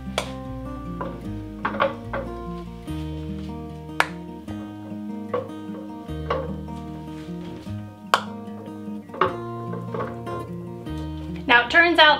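Background acoustic guitar music, with a few sharp clinks of glass jars and a metal jar lifter against a stainless stockpot as jars are lowered into a water-bath canner. A woman starts speaking just before the end.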